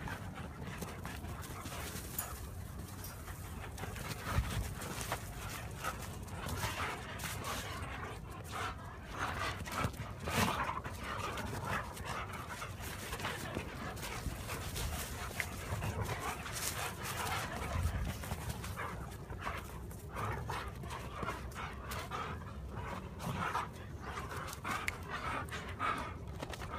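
Dogs panting as they run and play, with irregular scuffs and knocks throughout.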